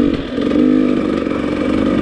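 Dirt bike engine running at a steady part throttle on a trail ride, easing off briefly just after the start and then holding an even pitch.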